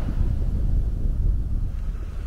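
Wind buffeting the microphone as a low rumble, over the wash of small waves breaking on a sand beach.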